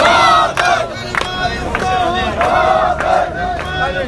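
A crowd of protesters chanting slogans loudly in unison, many shouting voices holding the syllables together, with sharp percussive hits now and then.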